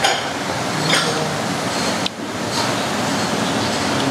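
Steady rushing background noise of a busy open-fronted eatery, like fan and street noise blended together, with a brief drop about two seconds in.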